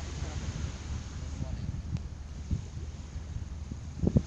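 Wind on the microphone outdoors: a steady low rumble with a couple of soft knocks.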